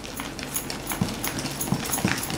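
A hand beating thick urad dal batter in a stainless steel bowl: a quick, uneven run of wet slaps, whipping air into the batter to make it light and fluffy.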